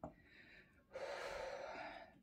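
A soft click, then a faint long breath lasting about a second, beginning near the middle.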